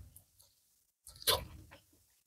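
A short crackle of crisp pan-fried fish being pulled apart by hand, about a second in, after a near-silent start.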